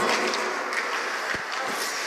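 Steady background noise of an indoor ice hockey rink, with one short knock a little past halfway.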